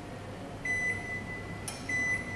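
Glen GL 672 built-in microwave oven's touch control panel beeping as its buttons are pressed. A steady high beep starts about two-thirds of a second in and lasts about a second, then a short click, and a second beep starts near the end.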